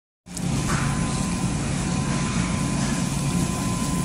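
Steady low hum and hiss of supermarket background noise by the refrigerated meat cases, with a faint steady high tone. The sound cuts out completely for a moment at the very start.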